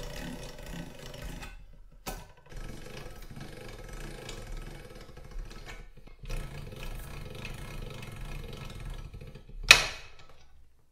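Hand-cranked three-roll slip roller turning, its steel rollers rumbling as a thin metal strip is rolled into a ring. It runs in three stretches with short pauses, and there is one sharp metallic clank near the end.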